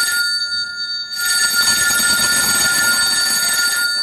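Telephone ringing: the tail of one ring, a pause of about a second, then a second ring that stops abruptly as the handset is picked up at the end.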